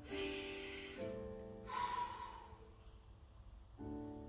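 Background music with sustained chords, over which a man breathes audibly: a breath in through the nose at the start and a breath out through the mouth about two seconds in, paced with a slow neck stretch.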